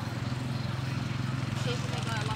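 A steady low engine drone, with faint voices in the background.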